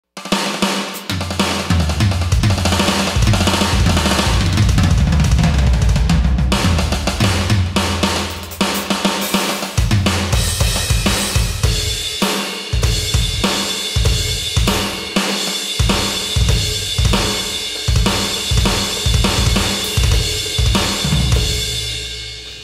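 Roland TD-30KV V-Pro electronic drum kit played hard with sticks, heard through its sound module: a busy rock drum performance with bass drum, snare, toms and cymbals. The first half is a dense run of rolls and fills. From about halfway there are steadier, evenly spaced strokes under ringing cymbals.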